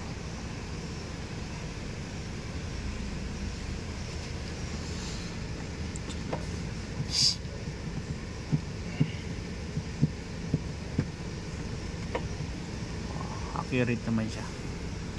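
Steady low hum inside a car's cabin from the running car and its air conditioning. A brief hiss comes about seven seconds in, and a string of sharp short clicks follows about a second later.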